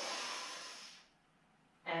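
A woman's audible breath in, a breathy rush that fades out after about a second, followed by near silence.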